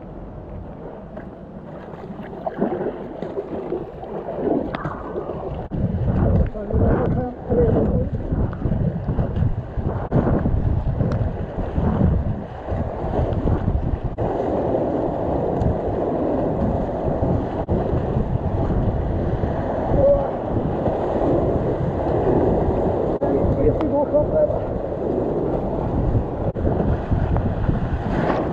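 Kayak paddle strokes splashing and river rapids rushing around a whitewater kayak, quieter at first on calm water and much louder from about six seconds in as the boat enters the rapids. Wind and spray buffet the head-mounted microphone.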